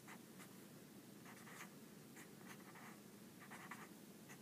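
Faint scratching of a pen writing on paper, in short strokes grouped in a few small clusters.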